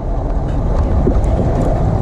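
Wind buffeting the microphone as a steady low rumble, over the Ford Power Stroke diesel pickup's engine running close by.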